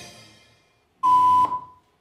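The last of a swing-band recording with brass dying away, then, about a second in, a single loud electronic beep lasting about half a second that cuts off sharply.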